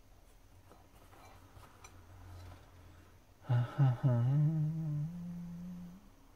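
A few faint light clicks of small parts and tools being handled, then a man humming: two short hums followed by a drawn-out note that rises slightly in pitch near the end.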